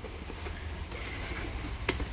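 Cardboard product box being handled and shut, with faint rustling and one sharp tap near the end, over a steady low hum.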